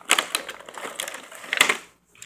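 Thin clear plastic blister tray crackling and clicking as a Hot Wheels die-cast car is pried out of its slot, with a louder snap about one and a half seconds in.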